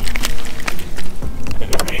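Irregular knocks, clicks and rattles of a freshly landed speckled trout being handled on a lip-grip and landing net aboard a plastic kayak, over a steady low rumble.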